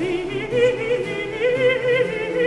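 Countertenor singing a sustained line with wide vibrato in a Baroque sacred motet, accompanied by a small period-instrument ensemble.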